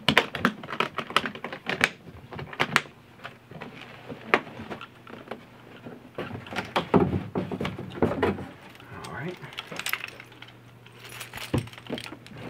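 A hardshell guitar case being handled: its metal latches click shut and the case knocks as it is closed and picked up, a run of sharp clicks and knocks. Near the end a bunch of keys jangles.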